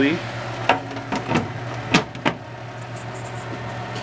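Excalibur food dehydrator's fan running with a steady hum, with a handful of sharp knocks and clicks in the first couple of seconds as its trays are handled.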